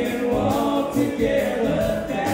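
Live rock band playing: electric guitars and drums, with voices singing together into the mics.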